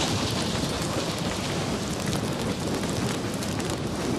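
Steady steam hiss from Reading T-1 class 4-8-4 steam locomotive No. 2102 standing at a stop, steam blowing from the top of its boiler, over a low rumble.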